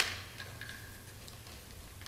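Faint clicks and ticks of a plastic tripod adapter being handled at the top of a mic stand: one small click at the start and a few fainter ones about half a second in, over a low steady hum.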